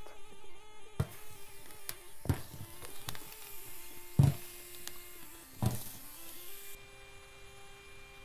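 Irregular soft knocks as whole red peppers are lifted, turned and set down on a round metal roasting plate over a fire, over a faint hiss. The loudest knock comes about four seconds in.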